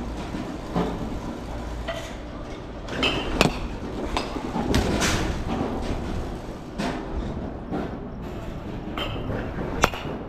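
Batting cage noise: a steady low rumble with scattered sharp cracks and clanks of balls and bats. The loudest crack comes near the end.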